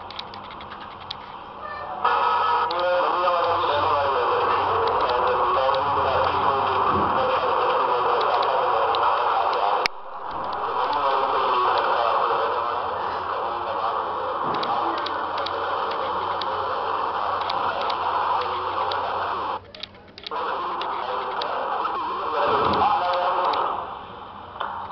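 Television news broadcast heard off a TV set's speaker: talk from the bulletin, re-recorded in the room, with short breaks about ten seconds in and near twenty seconds.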